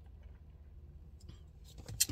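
Quiet car cabin: a faint steady low hum, with a few soft small ticks in the second half.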